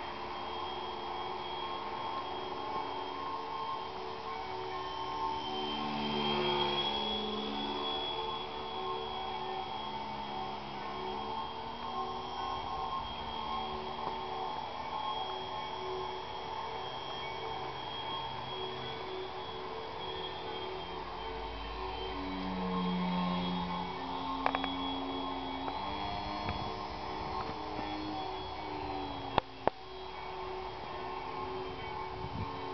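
Small electric RC model plane's motor and propeller whining in flight, the pitch shifting up and down in steps as the throttle changes. There are a couple of sharp clicks near the end.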